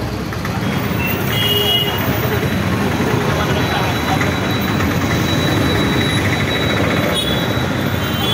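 Busy street traffic heard from a moving scooter: a steady din of motorbike and auto-rickshaw engines and road noise, with short horn beeps about a second and a half in and again near the end.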